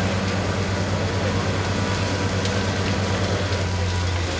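Steady low drone of a heavy engine running, likely fire-service vehicles at the scene, under a constant hiss and faint crackle from a building fire.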